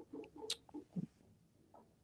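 Near silence with a few faint, short clicks in the first second, then nothing.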